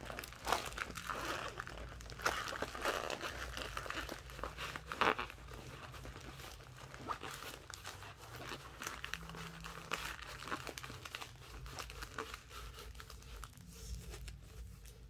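Packaging crinkling and rustling as a diamond painting kit is handled and opened, with sharper crackles about two and five seconds in and softer rustling in the second half.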